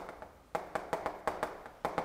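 Chalk writing on a blackboard: a quick run of short tapping clicks as the strokes of a word are put down, starting about half a second in.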